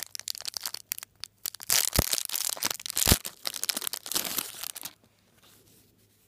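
Plastic packaging crinkling and tearing as it is handled and pulled open by hand, with two sharp snaps about two and three seconds in; the rustling stops about five seconds in.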